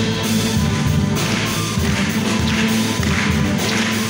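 Live orchestra playing, violins and cellos bowing, over a heavy low part that pulses in rhythm.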